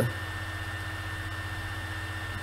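Steady low electrical hum with a faint even hiss: the recording's background noise, with no other sound.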